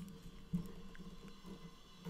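Quiet room tone with a low steady hum, and one faint short sound, a click or knock, about half a second in.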